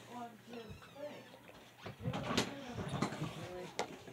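Mostly quiet talking, with a couple of short sharp clicks from paperwork and cardboard being handled.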